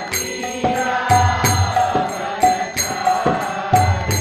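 A man's voice singing a devotional Hindu chant, accompanied by small hand cymbals (kartals) struck in a steady rhythm about twice a second, each strike ringing on.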